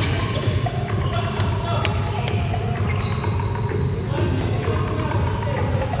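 Indoor gym ambience: a steady low hum with faint background music, and two short sharp knocks about a second and a half and two seconds in.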